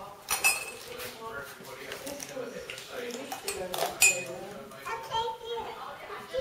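Metal teaspoon clinking against ceramic mugs while cake batter is mixed in a mug: several sharp, ringing clinks, the loudest about half a second and about four seconds in.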